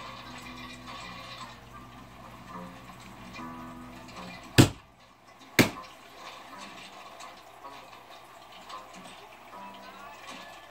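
Television soundtrack playing faint music in the background. Near the middle, two sharp knocks about a second apart stand out well above it.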